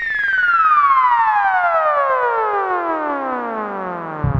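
Goa/psytrance music: a bright synthesizer tone with many overtones glides steadily down in pitch for about four seconds, a falling sweep in a breakdown, over a faint fast ticking rhythm.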